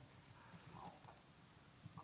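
Near silence: meeting-room tone with a few faint soft taps.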